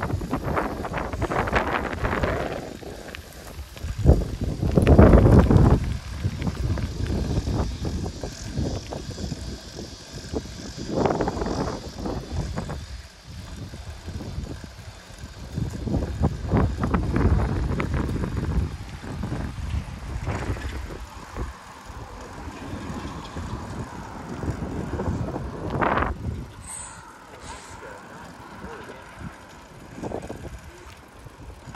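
Wind buffeting the microphone of a camera on a moving bicycle's handlebars, in irregular gusts that are loudest about four to six seconds in.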